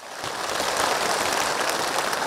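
A large crowd applauding: a dense, steady patter of many hands clapping that swells up over the first half second.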